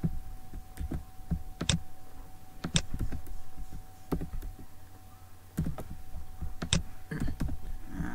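Irregular clicks of computer keys and mouse buttons, a few sharp, separate clicks with a quieter gap in the middle, as text is selected, cut and pasted. A faint steady hum runs underneath.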